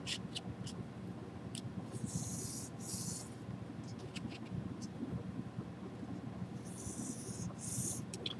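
Pencil scratching lengthwise along a model rocket body tube as guide lines are drawn against an aluminum angle: two faint strokes of about a second each, with a few light clicks of handling.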